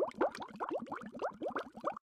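Bubbling sound effect: a rapid string of short, rising bloops, about seven or eight a second.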